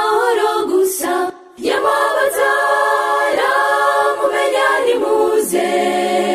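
Mixed youth choir singing a gospel song in harmony, in sustained phrases with a short breath break about a second and a half in.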